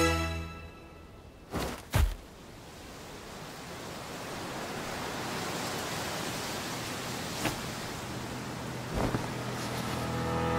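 Two dull thuds about a second and a half and two seconds in, the second heavier; then a steady rush of wind that slowly swells, with a couple of faint ticks.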